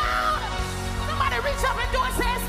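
Gospel worship song: a band with steady sustained keyboard chords and bass, and a lead voice rising and falling in pitch over it.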